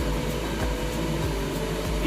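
Steady low hum and rush of running kitchen noise, with a faint steady tone and no crackle from the heating oil.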